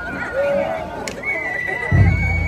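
A festival flute holding long, steady high notes, stepping up to a higher note about a second in, over crowd voices. A short rising call is heard near the start.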